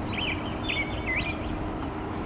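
A bird chirping: a quick run of short twittering notes in the first second and a half, over a steady low background hum.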